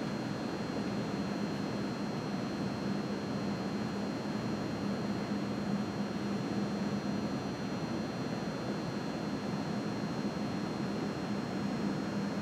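Steady background hum and hiss with a constant low drone, unchanging throughout, with no distinct events.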